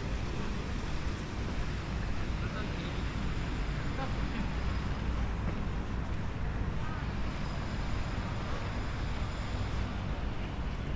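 Steady outdoor city background noise: a low rumble of distant traffic with wind on the microphone.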